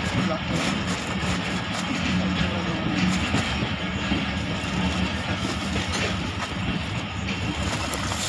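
Passenger train running, heard from inside a carriage at an open window: a steady rumble of wheels and coach with a constant low hum underneath.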